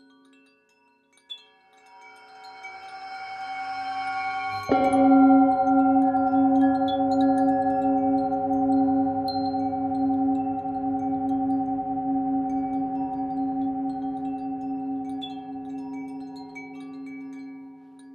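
Tibetan singing bowl: a swell builds for a few seconds, then the bowl is struck about five seconds in and rings on with a wavering hum and several overtones, fading slowly over about twelve seconds. Wind chimes tinkle lightly and sparsely throughout.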